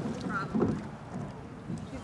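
Faint, scattered voices over a steady background of outdoor noise, with no single loud event.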